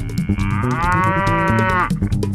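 A dairy cow mooing once: a single call about a second and a half long, beginning about half a second in.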